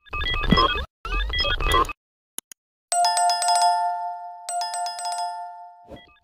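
Sound effects for a subscribe-button animation. Two short runs of quick electronic blips come first, then two sharp clicks, then a notification bell that rings twice, about a second and a half apart, and fades out.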